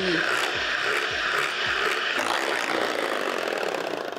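Handheld electric mixer running steadily, its twin beaters whipping chilled cream in a glass bowl; the whirr shifts in tone a little past halfway.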